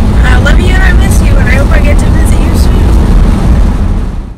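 Car cabin noise from a moving car: a loud, steady low rumble of road and engine noise, with a girl's voice talking over it in the first couple of seconds. The sound fades away near the end.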